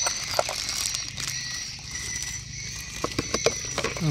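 Light clicks and clinks of metal sockets and bits being handled in a plastic cordless-drill case: a couple about a second in and a quick cluster near the end, over a steady high-pitched background drone.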